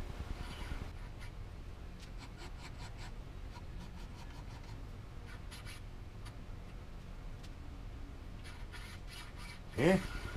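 Flat file drawn in light, irregular strokes over the edge of a steel go-kart axle, taking the burr off beside the keyway so the bearings will slide on.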